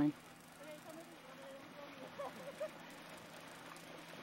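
Faint, distant voices over a steady low hum.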